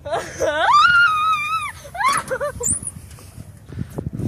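A girl screams while going down a playground slide: one long cry that rises in pitch and is held for about a second, then shorter wavering cries.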